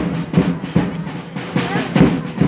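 Drums beating a steady rhythm, about two and a half beats a second, with a crowd talking in the background.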